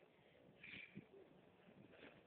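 Near silence, with only a faint, brief sound a little over half a second in.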